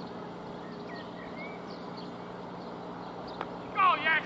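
Steady outdoor background noise with a low hum and a few faint bird chirps. A single sharp click comes a little after three seconds in, and a man's shout starts just before the end.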